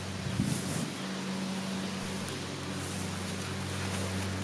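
A motor engine running steadily with a low, even hum, with brief irregular rustling about half a second in.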